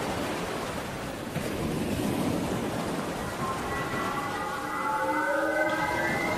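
Logo-intro sound effect: a swelling rush of noise, joined from about halfway by several sustained high synthesized tones that build in loudness.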